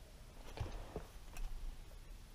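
Quiet truck cab with a few faint, short clicks, about three over two seconds.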